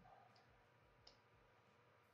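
Near silence: room tone with two faint short clicks, about a third of a second and a second in.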